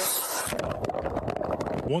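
Loud splashing and rushing water as a body-worn camera plunges into an icy pond. A bright splash at first gives way to a muffled rush as the microphone goes underwater.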